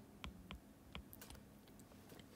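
Faint, scattered taps of a stylus tip on an iPad's glass screen while handwriting, a few light ticks over near silence.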